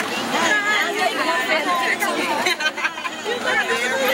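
Several people talking at once in overlapping, indistinct chatter as guests greet one another.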